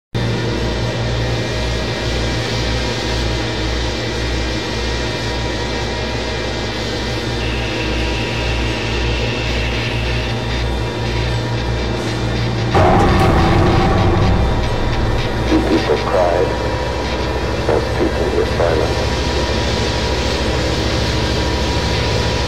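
Experimental horror soundtrack: a low, throbbing drone pulsing about twice a second, which switches abruptly about halfway through to a louder, dense layered texture with distorted, wavering voice fragments.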